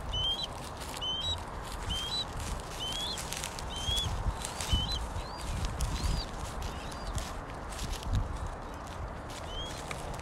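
A bird calling with short, high chirps, about one a second, thinning out near the end, over footsteps in dry stubble and wind rumble on the microphone.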